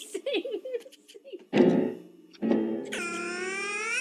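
A man's shout, then a loud thump and scuffle, then a long loud yell rising in pitch as he falls back from his chair, over soundtrack music.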